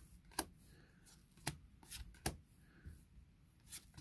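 Magic: The Gathering trading cards handled one at a time, slid off the front of a hand-held stack, with about six soft, sharp card clicks spread over the few seconds.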